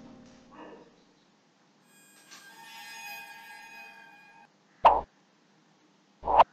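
Sound effects of an animated subscribe-button overlay. A chime of several held, ringing tones starts about two seconds in and stops abruptly, then a single short, loud click comes near the end.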